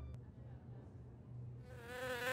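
Near silence, then near the end a faint buzzing fades in, wavering and growing louder: a cartoon housefly's buzz.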